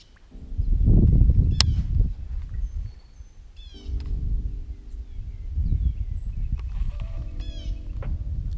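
Wind rumbling on the microphone, with a bird calling in short series of quick descending chirps a few times. A low hum comes and goes, and there is one sharp click about a second and a half in.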